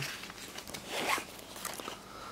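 Pages of a large paper booklet being turned by hand: one papery swish about a second in, then a few light paper rustles.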